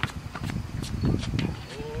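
A basketball dribbled a few times on an outdoor hard court: short sharp slaps with low thumps, several times in two seconds.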